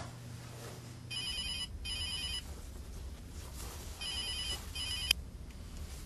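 Telephone ringing with an electronic warbling ring: two double rings about three seconds apart. The second is cut off by a click about five seconds in.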